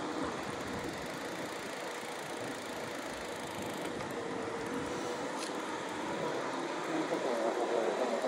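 Steady riding noise of a Yamaha YPJ-TC electric-assist bicycle on asphalt, tyres and air rushing past, with a faint steady hum through the middle and one brief click about five and a half seconds in.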